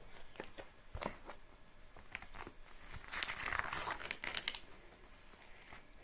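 Paper pages of a picture book rustling and crinkling as the book is handled and a page is turned, with a few light taps early on and a longer run of paper noise about halfway through.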